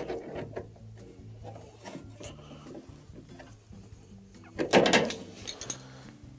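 Spring hose clamp being worked with pliers onto a washing machine drain pump hose: scattered light clicks, then a short scraping rustle about five seconds in, followed by a few sharp metal clicks.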